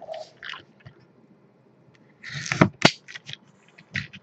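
Trading cards and a foil card-pack wrapper being handled: a short crinkly rustle about two seconds in, with a few sharp clicks.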